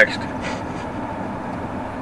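Steady road and engine noise inside a moving pickup truck's cab.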